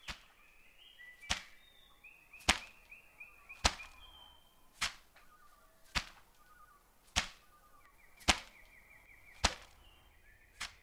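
A skipping rope slapping the ground in a steady rhythm, a sharp slap a little over once a second, nine times. Short high chirps like birdsong sound between the slaps.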